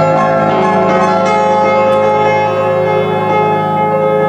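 Grand piano played solo: a chord held ringing over a sustained low bass note, with a few higher notes struck into it.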